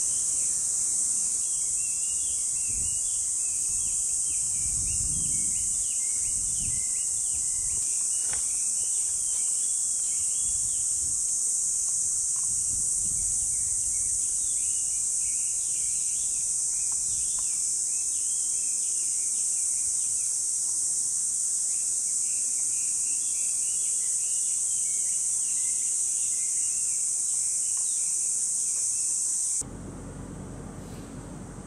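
A chorus of summer cicadas: a loud, steady, high-pitched drone. Bursts of twittering bird calls sound over it near the start, in the middle and near the end, with a few low rumbles about five seconds in.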